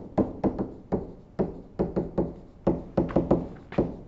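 Stylus tapping on a tablet while handwriting: an irregular run of sharp little taps, about four a second.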